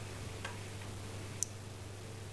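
Two separate clicks at a computer desk, about a second apart, the second one sharper, over a steady low hum.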